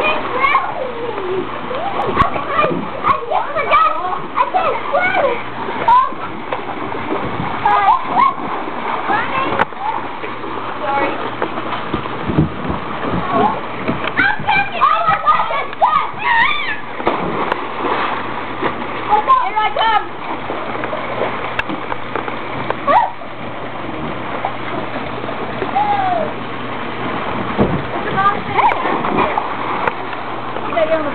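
Water splashing in a swimming pool as children swim and thrash about, with their indistinct shouts and calls over it.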